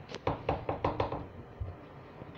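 About seven quick, light knocks in the first second, a kitchen utensil striking a cooking pot, followed by a quieter second.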